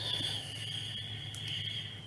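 A steady high-pitched tone that holds for about two seconds and then stops, over a low room hum.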